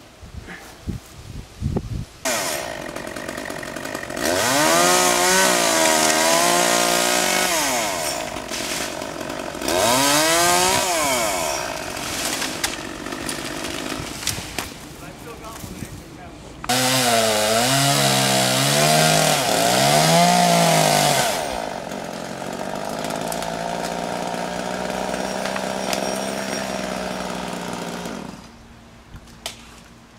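Chainsaw engine running hard and revving up and down over and over as it cuts. It then settles to a steadier, lower note and stops near the end.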